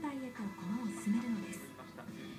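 A voice speaking over background music with a steady held note; the voice stops about one and a half seconds in, leaving the music.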